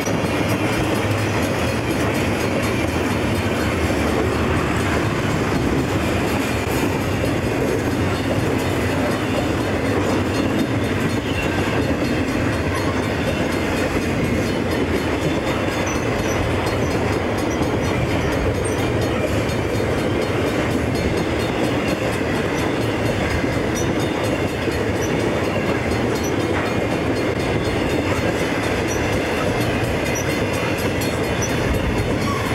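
Freight cars of an intermodal piggyback train rolling past close by: a steady rumble of steel wheels on rail with the clickety-clack of wheels over rail joints.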